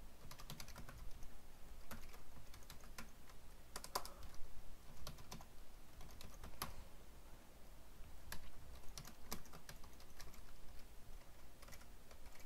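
Typing on a computer keyboard: irregular key clicks in short runs with brief pauses between them.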